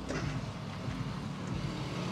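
Low steady rumble of traffic in the background.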